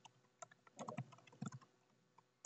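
Faint typing on a computer keyboard: a quick run of keystrokes, bunched in the middle.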